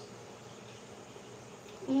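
A steady, faint buzzing hum of background noise in a small room, with a woman's short voiced 'mm' at the very end.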